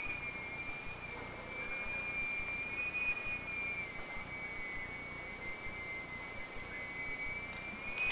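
A steady high-pitched whine that wavers slightly in pitch, over faint background hiss.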